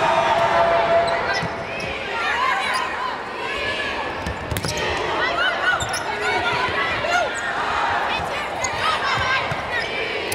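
A volleyball rally on a hardwood court: repeated short squeaks of players' shoes on the floor, with a sharp smack of the ball being hit about halfway through, over a steady background of arena crowd noise.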